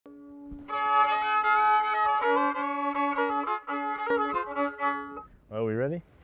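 Solo fiddle playing a quick phrase of notes over a held lower note, stopping about a second before the end. A man's voice comes in briefly after it.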